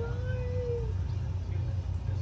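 Young alligator giving a single steady, whine-like call just under a second long as it is stroked in the water. A low steady hum runs underneath.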